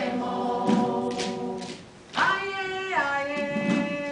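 A group of voices singing a song together in long held notes; about two seconds in the singing briefly dips, then a new phrase starts high and slides down in pitch. A few light percussive strikes sound under the voices.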